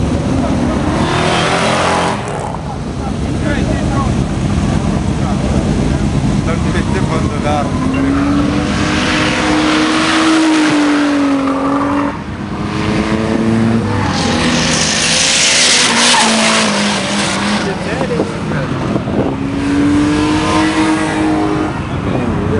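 Cars on a race track running past one after another, their engine notes rising and falling several times, with tyres squealing as they slide.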